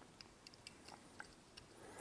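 Near silence: room tone, with a few faint small ticks.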